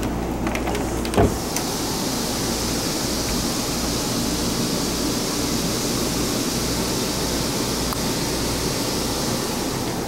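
Steady rushing hiss of air-conditioning airflow over a low hum inside a motorhome, the hiss rising about a second and a half in. A single knock sounds about a second in.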